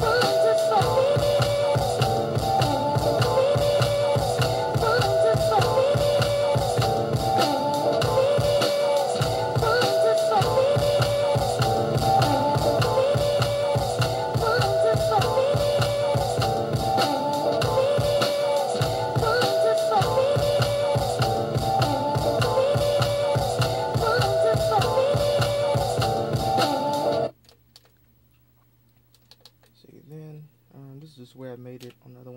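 A sample-based boom-bap hip-hop beat playing back from an Akai MPC 1000: a looped sample over drums, repeating about every two seconds. It cuts off suddenly near the end.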